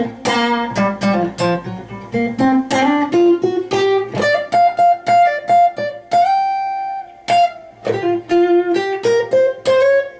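Steel-string acoustic guitar playing a single-note blues lead from the G minor pentatonic scale. The picked notes climb higher through the middle, one note is held ringing for about a second around six seconds in, and the line then comes back down.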